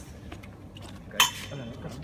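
A single sharp clink of hard objects knocking together a little over a second in, with a short ring after it, over background voices.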